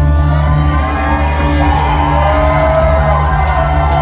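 Live rock band holding a sustained low chord with no clear beat, with gliding, wavering tones above it. The crowd is cheering and whooping over the music.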